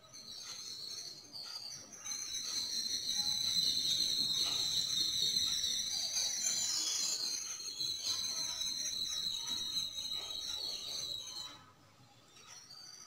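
A steady shrill, high-pitched whistling tone, wavering slightly, that grows louder after a couple of seconds and stops shortly before the end.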